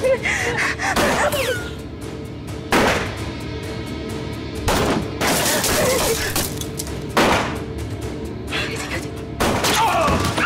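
Dramatic film score holding a steady low drone, cut through by single gunshots about every two seconds. Each shot rings on with echo.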